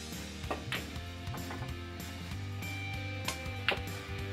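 Soft background music, with a few sharp clicks of a pool cue and balls striking: a pair of clicks just under a second in, and another pair near the end.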